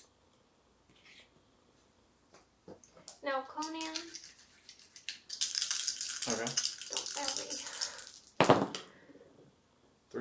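Dice rattled in the hand for about three seconds, then thrown onto the gaming table with one sharp clatter about eight and a half seconds in.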